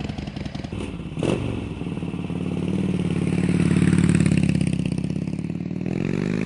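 A 2007 Harley-Davidson Sportster 1200 Custom's 1200cc V-twin running through Screamin' Eagle slip-on mufflers. It idles with a lumpy pulse, swells in loudness through the middle, then eases back, with a single sharp click about a second in.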